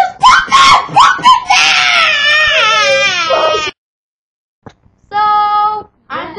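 A young girl's voice in loud, play-acted crying: a few choppy sobbing cries, then a long, high, wavering wail that stops abruptly. Near the end comes one short, steady held vocal note.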